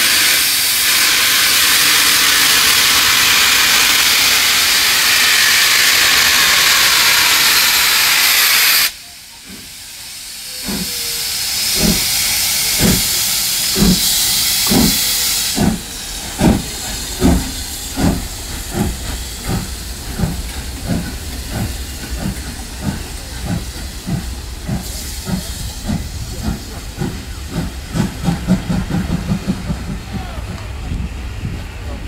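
Two steam locomotives, LMS Royal Scot class 46100 Royal Scot and BR Standard Class 7 70000 Britannia, starting a train away. A loud steady steam hiss cuts off suddenly about nine seconds in. The exhaust beats then begin, slow at about one a second, and quicken steadily to about three a second as the train gathers speed.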